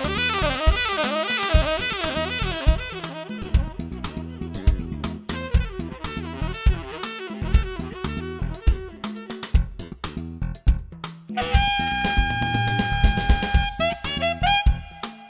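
Jazz-funk band: a saxophone plays quick runs over a drum kit, then holds one long steady note near the end.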